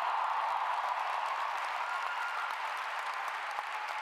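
Audience applauding, a dense steady clapping that eases slightly toward the end.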